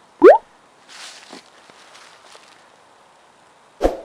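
A single loud plop of an object dropping into water, its pitch rising quickly. Faint splashing or rustling follows, and there is a short knock near the end.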